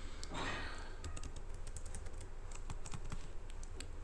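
Typing on a computer keyboard: a quick, uneven run of key clicks over a steady low hum.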